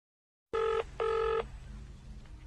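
Telephone ringback tone heard through a mobile phone: two short ringing pulses about half a second apart, starting about half a second in, as the outgoing call rings at the other end. A faint low hum follows.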